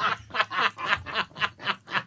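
Hard laughter in quick breathy pulses, about four a second, with no words.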